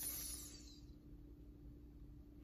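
A brief dry rustle of a sticker backing sheet sliding over a paper planner page, fading out within the first half-second; then faint room tone with a steady hum.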